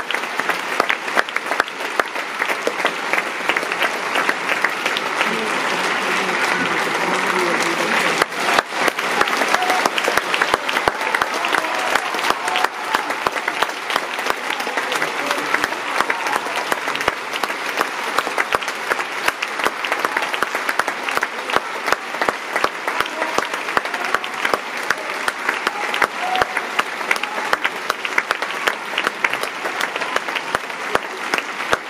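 Theatre audience applauding steadily through curtain calls, a dense mass of clapping at an even level, with some voices in the crowd mixed in.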